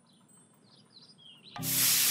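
Faint bird chirps, then about a second and a half in a cartoon paint sprayer starts with a sudden loud, steady hiss, over background music.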